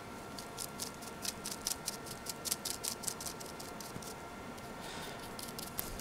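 A paintbrush working acrylic paint onto plastic: faint, quick, scratchy ticks, several a second, for about four seconds.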